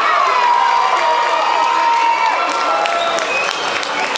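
Fight crowd cheering and yelling, with long held shouts, then clapping breaking out in the second half.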